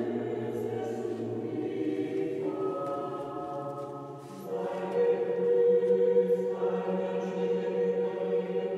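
A choir singing slow, held chords that change every couple of seconds, growing louder about halfway through.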